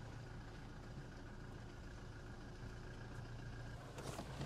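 A pickup truck's engine running faintly and steadily, a low even hum with no change in pitch.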